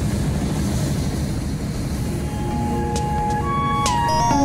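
Steady road and engine noise of a truck driving at highway speed, heard from inside the cab. About halfway in, sustained synthesizer music tones come in over it.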